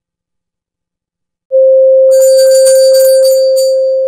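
After about a second and a half of silence, a loud, steady pure electronic tone starts suddenly and holds, slowly fading, with a brief flurry of high, tinkling chimes over it for about a second and a half: an edited-in transition sound effect.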